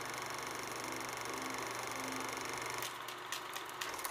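Old-film audio noise: a steady hiss with a low hum, joined by a few crackles and pops in the last second or so as the film burns out.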